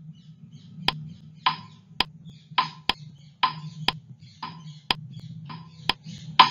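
Clock tick-tock sound effect for a countdown timer: sharp ticks alternating with duller tocks, about two strokes a second, over a low steady hum.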